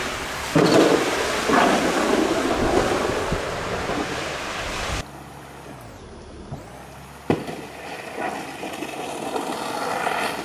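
Water rushing down a concrete dam spillway, with wind on the microphone and the spray of a wakeboard cutting across it. A loud surge comes about half a second in, the sound drops suddenly about five seconds in, and a sharp slap comes about two seconds later.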